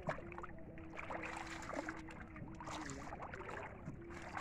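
Water splashing and dripping in irregular bursts as a fine-mesh ring net trap is hauled and lifted through shallow water. A faint steady hum runs underneath.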